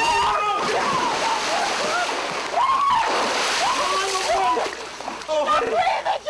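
Water splashing in a backyard swimming pool as someone jumps in, with children's high voices calling and shrieking over it.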